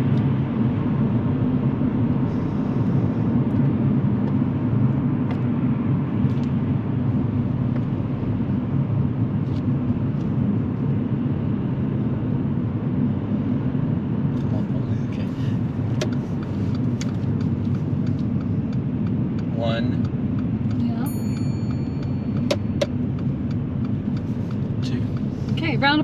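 Steady low rumble of a car's engine and tyres heard from inside the cabin while driving at road speed and round a roundabout, with a few faint clicks in the second half.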